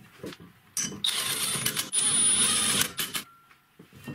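Car brake disc on its wheel hub spun by hand, turning on the hub bearing for about two seconds starting about a second in, after a couple of short knocks.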